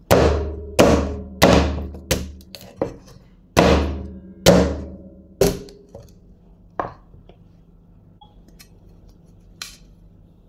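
Cleaver chopping cassava roots on a wooden cutting board: a run of heavy, ringing chops about every half second to second, loudest in the first half, then a few lighter cuts and one last chop near the end.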